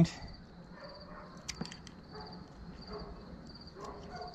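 Scissor-style dog nail clippers snipping a dog's toenail: two sharp clicks close together about a second and a half in, with a few fainter clicks around them as the clippers work around the nail.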